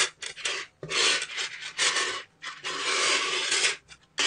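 Strands of small steel neodymium magnet balls rubbing and clicking against each other and the tabletop as hands slide them along and snap them together side by side, in several bursts.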